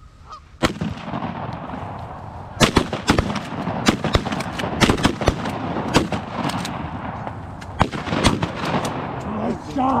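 A rapid volley of shotgun shots from several hunters firing at Canada geese, a dozen or so sharp blasts spread over about six seconds, starting about two and a half seconds in. Dry grass cover rustles against the camera throughout.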